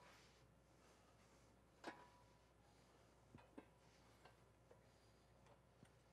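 Near silence, broken by a faint click about two seconds in and two fainter ticks a second and a half later, from the steel handle being set onto a manual concrete block splitter.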